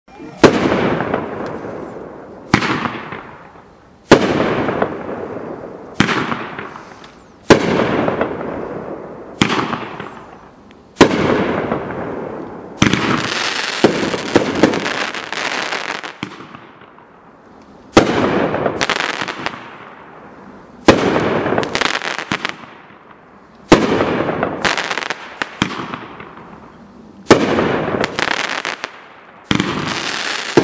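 500-gram consumer fireworks cake (Velociraptor) firing its mortar shots one after another: a string of about twenty sharp bangs, roughly one every one to two seconds, each followed by a fading tail of smaller pops. In the second half some shots come in quick clusters.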